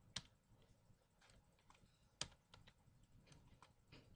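Typing on a computer keyboard: a scatter of faint keystrokes, with two louder key clicks, one just after the start and one about two seconds in.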